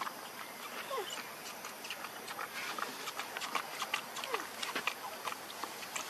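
Baby macaque sucking milk from a plastic bottle held to its mouth: many small wet clicks and smacks, irregular, throughout.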